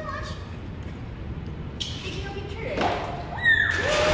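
Swimming-pool water splashing with children's voices, the splashing and a high child's shout getting louder about three and a half seconds in.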